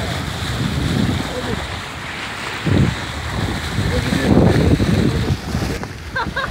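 Wind buffeting the microphone over the rush of seawater along a moving boat, growing louder in the second half.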